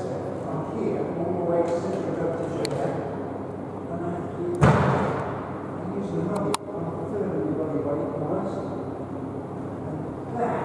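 Indistinct talk, with one loud thud about halfway through and a sharp click about two seconds later.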